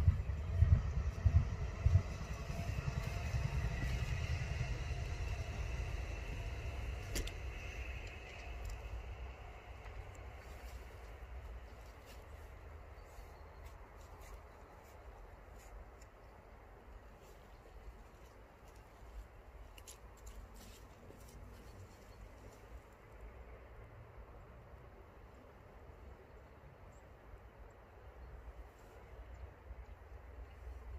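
A motor vehicle going by, its engine noise fading away over the first eight or nine seconds, with low thumps on the microphone at the very start. After that only a faint low rumble of outdoor background remains.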